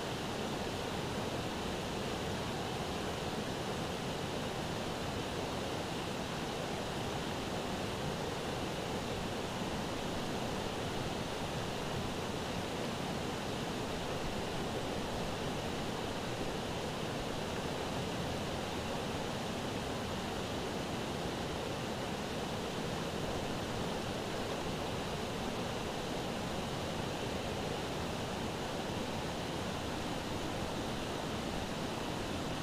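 Fast, shallow river rushing steadily over rocky rapids, an even, unbroken water noise.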